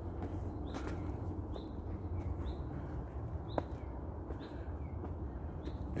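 A bird gives short, high, upward-sliding chirps every second or so over a steady low rumble. There is a single sharp click about three and a half seconds in.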